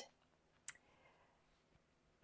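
Near silence with one brief, sharp click about two-thirds of a second in.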